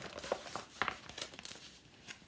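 Paper rustling and crinkling as a magazine is handled and turned over, with a few short crackles in the first second and a half.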